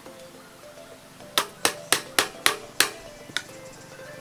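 Six quick, sharp knocks about a quarter second apart, then a lighter one: a hand tapping down on the top of a PVC pipe fitting to seat it on the pipe. Steady background music runs underneath.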